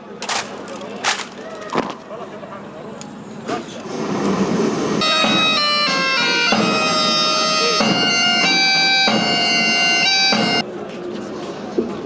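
Bagpipes playing a melody of held notes that step from pitch to pitch, loud from about five seconds in and cutting off abruptly near the end. Before that there are a few sharp knocks.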